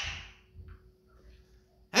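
A man's voice trails off at the end of a word, then a near-quiet pause with a few faint brief sounds, and his speech starts again just before the end.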